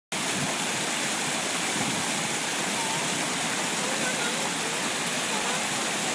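Small stream rushing over a rocky step in a steady white-water cascade.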